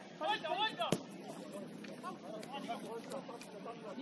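Footballers shouting to each other on the pitch, with a single sharp thud of the ball being struck about a second in, then fainter voices in the background.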